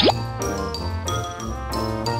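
Upbeat background music with a quick cartoon pop sound effect, a short pitch-sliding blip, right at the start.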